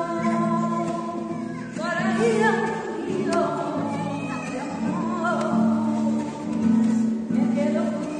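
Flamenco-style singing with guitar accompaniment: voices holding long, wavering sung notes over steady low accompaniment.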